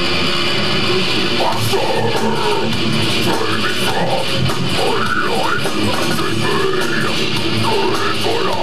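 Death metal band playing live: distorted electric guitars, bass and drums, loud and unbroken, with pitch-bending lines rising and falling over the band from about a second and a half in.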